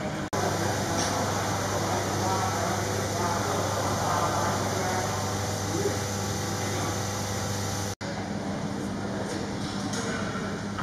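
Steady low hum of room ventilation with indistinct voices in the background. The sound drops out abruptly for an instant near the start and again about eight seconds in.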